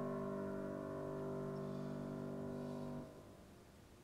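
Grand piano's closing chord ringing and slowly fading, then cut off about three seconds in, leaving near silence.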